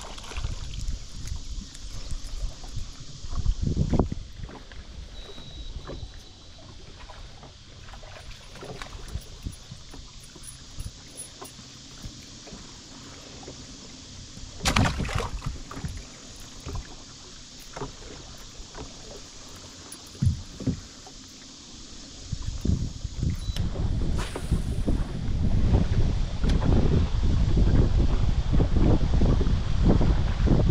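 Water lapping against a small boat's hull, with a few sharp knocks. Wind buffets the microphone, getting loud in the last several seconds.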